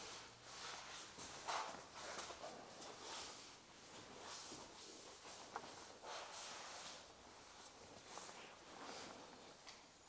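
Faint rustling of clothing and soft shuffling on a foam mat, with a few small knocks, as a person is rolled onto their side into the recovery position.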